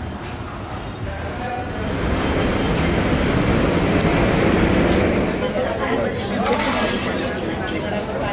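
Airport terminal ambience of background voices and footsteps, with the steady low rumble of a moving escalator that grows louder in the middle while riding it.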